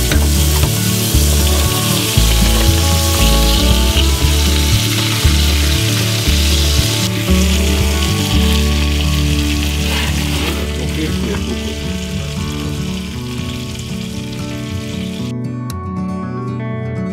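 Meat sizzling in a hot roasting pan, with soft music playing underneath; the sizzle cuts off suddenly near the end.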